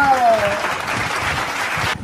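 A burst of applause-like clapping noise lasting about a second and a half, following a voice's drawn-out, falling word at the start.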